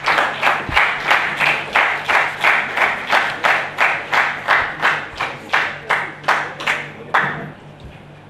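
Audience applause in a hall, the claps landing in an even rhythm of about three a second. It tapers and stops about seven seconds in.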